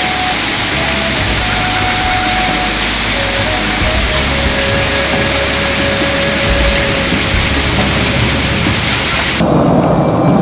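Heavy rain pouring onto pavement, a loud steady hiss of drops, with a low rumble of thunder beneath it. The rain cuts off suddenly near the end.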